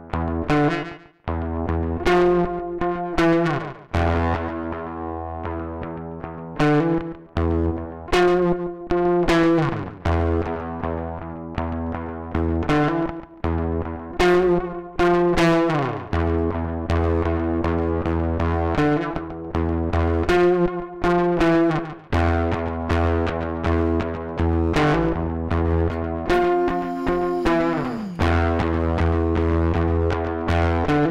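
Heritage H-150 solid-body electric guitar played through a Reaktor software effects chain of distortion, Chebyshev waveshaper and tape delay: distorted chords struck again and again, ringing into one another. Several chords slide down in pitch as they fade.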